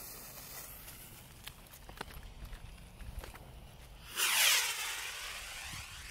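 Butterflies Rocket bottle-rocket firework: its fuse fizzes faintly for about four seconds, then the rocket takes off with a loud rushing hiss that fades over a second or two.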